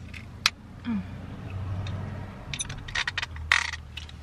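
Hard plastic parts of a car phone mount clicking and scraping as they are fitted together by hand, with a cluster of sharp clicks near the end. A short "oh" about a second in, over a faint low hum.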